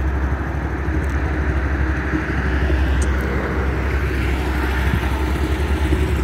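Small single-cylinder four-stroke motorcycle engine idling with a steady low putter of quick, even pulses, under a broad hiss that swells a little in the middle.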